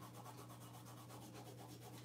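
Faint, rapid fingertip rubbing on damp paper over a wooden block: the paper backing is being rubbed off a Mod Podge reverse photo transfer, uncovering the printed graphic. A steady low hum runs underneath.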